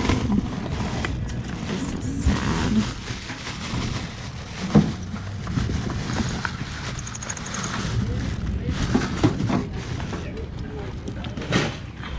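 Plastic bags and wrapping rustling as hands dig through a cardboard box of boxed items, with a sharp knock about five seconds in and another near the end.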